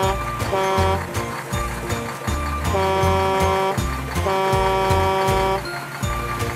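Background music with a steady beat, over which a cartoon truck horn honks several times: a short toot, then two long honks.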